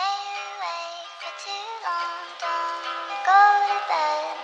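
Lo-fi pop song in a stripped-down passage: a soft, high female voice sings the hook over light accompaniment, with the drums and bass dropped out.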